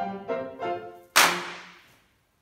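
A youth choir with piano sings its last few short notes. About a second in comes a single sharp crack, the loudest sound here, that rings off in the hall under a low held note as the music ends.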